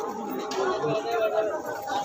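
Background chatter of several people talking at once, with a thin steady tone underneath.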